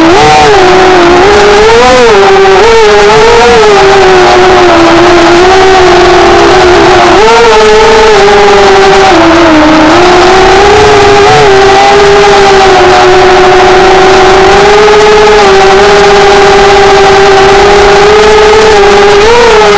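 Small motor whining close to the microphone, its pitch rising and falling with the throttle for the first several seconds, then holding almost steady as it runs at an even speed.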